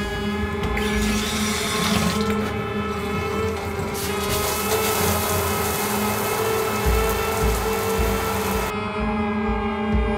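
A shower turned on: water spray hisses steadily from about four seconds in and cuts off abruptly near the end, over background music with sustained tones.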